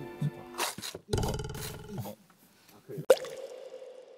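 Background music, cut about a second in by a loud buzzing burst lasting just under a second, then a short sharp click about three seconds in.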